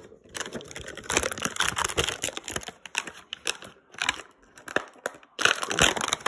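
Clear plastic blister packaging crinkling and crackling in quick, irregular crackles as it is handled. It stops briefly just before the end, then comes back louder.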